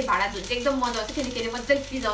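A woman talking, with a steady hiss behind her voice.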